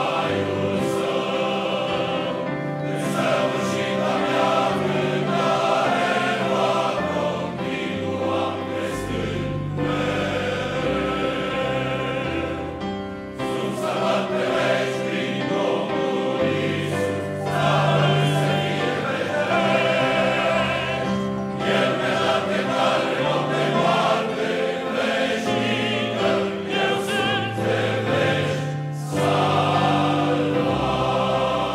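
Large men's choir singing a Romanian hymn in harmony, in long phrases with brief dips between them.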